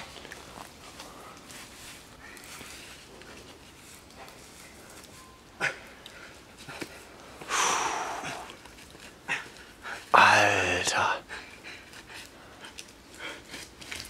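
A man breathing hard and groaning with effort as he grips and hauls himself up a tree trunk: a long, hard breath about halfway through, then a louder strained groan a couple of seconds later.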